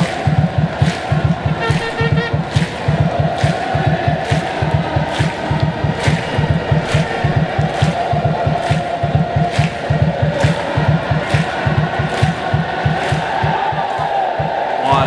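Stadium crowd of Malaysian football ultras chanting in unison over a steady drum beat, with sharp drum hits a little under a second apart.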